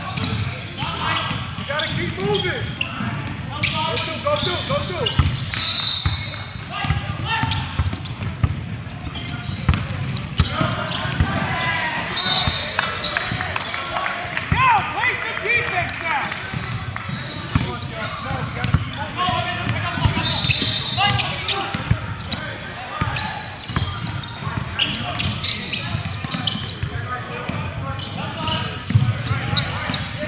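Basketball game play on a hardwood gym floor: a ball dribbling and bouncing in repeated thuds, mixed with players' and spectators' indistinct voices in a large hall.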